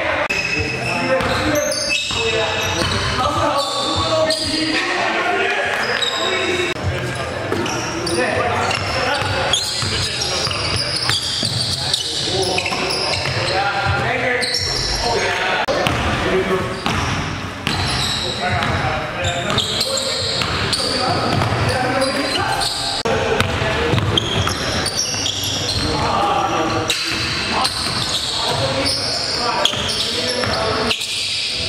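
Basketball dribbled on a hardwood gym floor amid players' voices and calls, with the echo of a large gymnasium.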